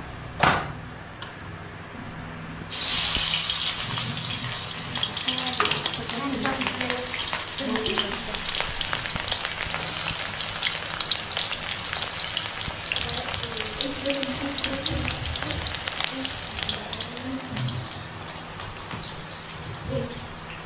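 Cooking oil in a wok sizzles sharply when onion is dropped in, about three seconds in, then goes on frying steadily and slowly settles. A single sharp knock comes just before.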